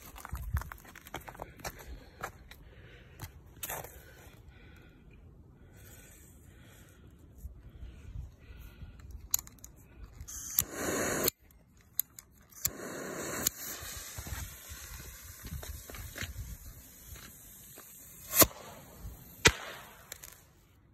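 Homemade bottle rocket being fired: crackling and scraping on snow at first, then loud hissing of the burning fuse and motor, and a sharp loud bang near the end as it bursts, followed about a second later by a smaller pop.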